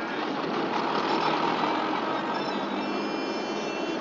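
Car driving, with engine and road noise heard from inside the cabin. From about halfway, a few thin steady high tones sound over it.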